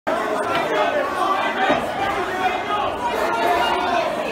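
Crowd chatter: many people talking at once in a crowded room, a dense babble of overlapping voices with no single voice standing out.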